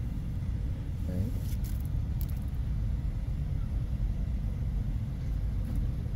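Steady low rumble of outdoor background noise, with a few faint clicks about one and a half to two seconds in.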